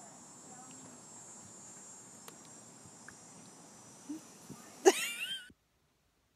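Steady high-pitched chorus of insects, with a few faint ticks. About five seconds in comes a short, loud call with a wavering pitch, and then the sound cuts out.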